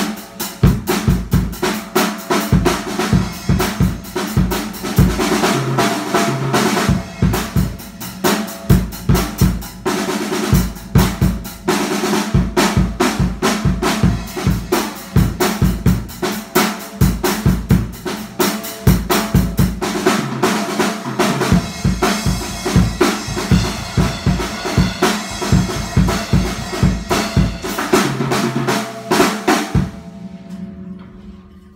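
A ddrum acoustic drum kit played nonstop: rapid snare and tom strikes over bass-drum kicks, with cymbals crashing and washing over the top.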